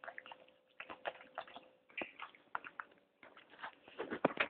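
Bulldog eating food off a fork: irregular short smacks and clicks of its chewing and licking, with a faint steady hum in the first couple of seconds.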